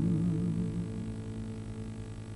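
The song's final acoustic guitar chord ringing out and slowly fading away, leaving a low, steady hum.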